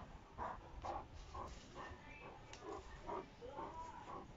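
Landseer dog growling in short bursts, about three a second, while tugging on a rope toy.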